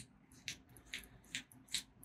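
A few faint, light clicks from a small metal ART Cocoon micro pulley being handled, its parts knocking and clicking together in the hands.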